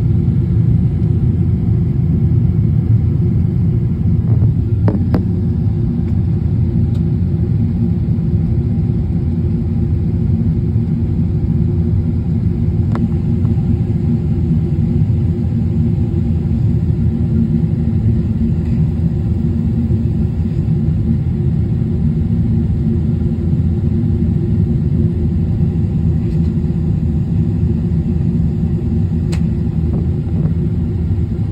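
Steady low rumble of a jet airliner's cabin, engine and airflow noise heard from a window seat during the descent to land. A few faint clicks sit over it.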